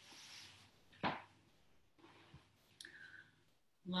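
Quiet room tone broken by a single sharp click about a second in, with a few fainter ticks later.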